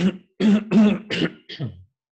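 A man coughing and clearing his throat in a run of several short, loud, voiced hacks.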